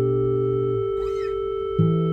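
Soundtrack music: sustained acoustic guitar notes ringing and slowly fading, with a new low note plucked near the end. A brief, faint wavering high sound passes about halfway through.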